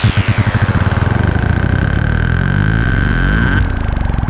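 Serge Paperface modular synthesizer patch giving a fast, low pulsing under a high tone. The tone sweeps down over the first half second and then holds steady, and the sound changes abruptly about three and a half seconds in.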